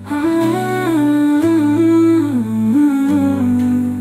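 A wordless hummed melody over held low backing notes in a Hindi romantic song. The tune moves up and down in steps, comes in at the start and fades toward the end.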